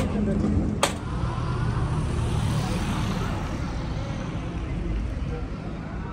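Street traffic: a steady low rumble, with a passing vehicle swelling and fading about two to three seconds in. Sharp clicks about a second apart stop about a second in.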